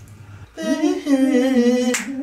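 A man's voice singing one long wordless note, without music. It comes in about half a second in with an upward slide, then holds, wavering slightly and drifting a little lower.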